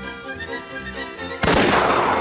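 Background string music, then a starting pistol fires once about a second and a half in: a sudden sharp report that leaves a smear of echo as the sprinters break from the blocks.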